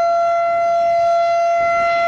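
Civil defence siren sounding one steady, unwavering tone with bright overtones: a test run of the town's warning siren.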